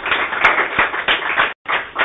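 Audience applauding: a dense patter of many hands clapping that breaks off suddenly about one and a half seconds in.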